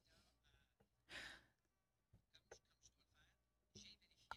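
Near silence in a pause of speech at a desk microphone, broken about a second in by one faint, short breath or sigh.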